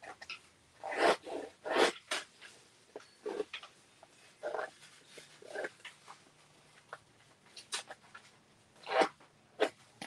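Hand-held paper distressing tool scraping along the edge of a sheet of paper to rough it up, a series of short irregular scratching strokes, loudest about a second in and again near the end.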